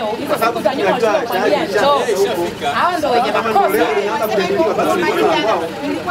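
Speech only: several voices talking over one another in a group conversation.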